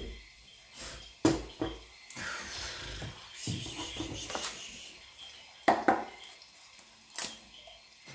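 Tarot cards and decks handled on a desk: a few sharp taps and knocks, with short rustles of cards between them.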